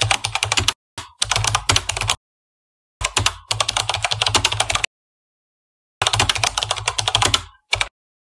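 Computer keyboard typing sound effect: rapid runs of keystrokes lasting one to two seconds each, broken by short silent pauses.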